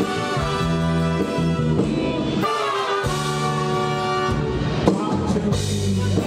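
Live band music: a horn section of trumpets, trombones and saxophones playing held chords over bass and drums, with a brief break about two and a half seconds in.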